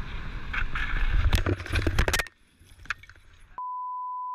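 Wind rushing over a helmet-mounted microphone with road rumble while cycling, then a quick run of sharp clatters and scrapes as the bicycle crashes to the ground, followed by near quiet. Near the end a steady single-pitch censor bleep starts.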